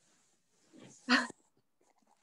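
One short, sharp bark-like cry about a second in, heard over a video-call line from a just-unmuted participant.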